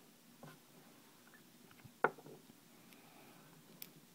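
Faint handling sounds of a small nitro engine block and its removed piston sleeve turned over in the hands: a few light clicks, the sharpest about two seconds in.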